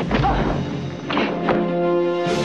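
Film trailer music with a deep boom at the start and another sharp hit about one and a half seconds in.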